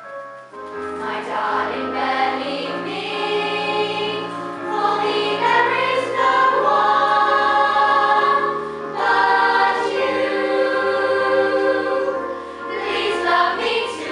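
Choir of girls' voices singing a song in held, sustained notes, with low keyboard notes underneath, the full sound coming in about half a second in.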